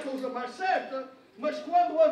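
A man speaking, with a short break about a second and a half in.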